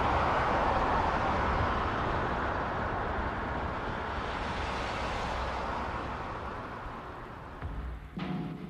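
Cars driving along a road: a steady rush of tyre and wind noise that slowly fades.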